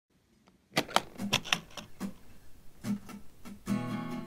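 Fender acoustic guitar starting a song: after a brief silence, a run of short, clicky muted strokes on the strings, then a chord rings out near the end.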